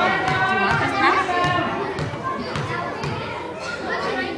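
Indistinct voices of spectators and children talking and calling out, several at once, in a gymnasium, with a few short thuds.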